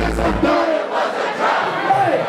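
Club crowd shouting along over a hip hop backing track at a live rap show; the track's bass cuts out about half a second in, leaving the voices over a thin beat.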